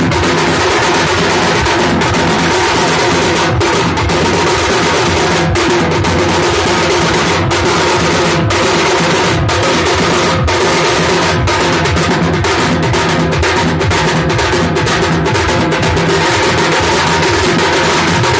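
Muharram drum ensemble (Moharmi dhun): several stick-beaten, white-headed drums and a large barrel drum played together in a loud, dense, unbroken drumming rhythm.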